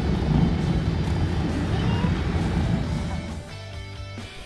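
Steady low road and engine rumble heard from inside a moving car's cabin in traffic. Near the end the rumble drops away and guitar music begins.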